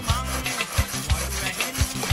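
Background music with a steady beat, over the scraping of a steel blade being rubbed back and forth on a water sharpening stone.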